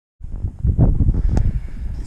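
Wind buffeting the microphone: loud, irregular gusts of low rumble, with a single sharp click about one and a half seconds in.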